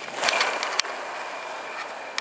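Small spring-powered toy dragster with large disc wheels rolling fast across a hard floor after a push. A rolling whirr with a faint thin whine fades as it travels away, with a single click just under a second in.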